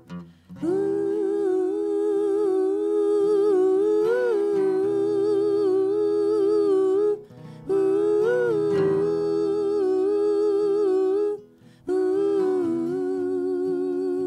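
Several voices singing long wordless notes in harmony with a slight vibrato, in three held phrases with short breaks between, over an acoustic guitar.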